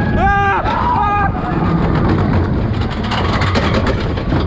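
Hybrid roller coaster train rumbling steadily along its track, with wind on the microphone. Riders' high yells ring out over it for about the first second.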